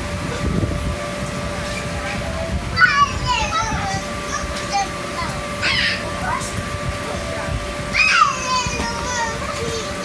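Young children's high voices and squeals while playing in an inflatable bounce house: a few short calls about three, six and eight seconds in, over a steady low hum.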